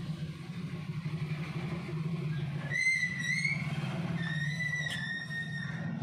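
A steady low hum runs throughout. Over it come two high whistle-like tones: a short wavering one about three seconds in, and a longer, steadier one near the end.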